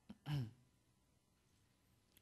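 A man's short voiced grunt, falling in pitch, about a quarter second in, just after a faint mouth click; the rest is quiet room tone.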